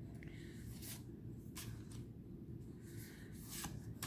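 Faint rustling of oracle cards being handled, card sliding against card several times as they are moved through the hand, over a low steady room hum.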